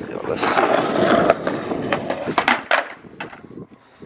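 Skateboard wheels rolling on a concrete sidewalk, with a few sharp clicks around the middle, dying down in the last second.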